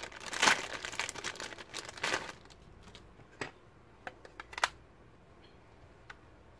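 Metallised anti-static bag crinkling as a new laptop hard drive is unwrapped, for about two seconds, followed by a few light clicks as the bare drive is handled.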